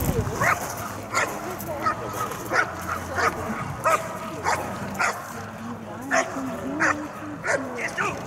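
A dog barking repeatedly at a protection helper, sharp single barks about every two-thirds of a second.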